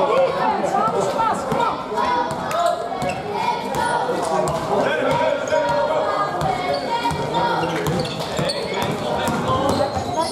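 Basketball being dribbled on a sports hall floor, repeated bounces during youth game play, with players' and spectators' voices in the hall.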